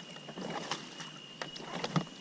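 Water lapping and small knocks against an inflatable paddle board, with scattered light clicks and a steady faint high whine throughout.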